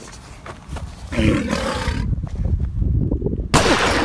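Wind buffeting a camera microphone outdoors in rain, an uneven low rumble with gusts. A sudden loud, noisy burst comes in about three and a half seconds in.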